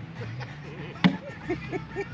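A cornhole bag landing on the wooden board with a single sharp thud about a second in, with people chatting around it.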